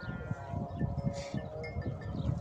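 Distant call to prayer (adhan) from a mosque loudspeaker, heard as long held sung notes ringing across open country.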